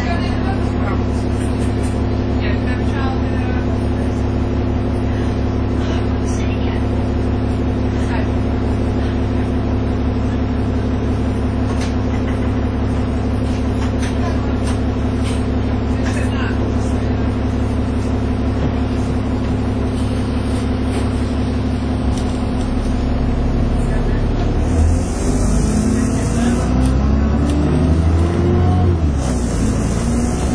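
Dennis Trident 2 double-decker bus's diesel engine idling steadily, heard from inside the saloon, with light rattles and clicks from the bodywork. About three-quarters of the way through, the engine revs up as the bus pulls away, its pitch rising and falling through the gear changes.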